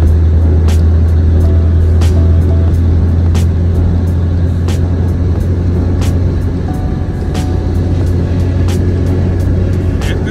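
In-cabin drone of a Porsche 944's four-cylinder engine with road noise while cruising at a steady speed, with music playing over it to a regular beat of about one and a half beats a second.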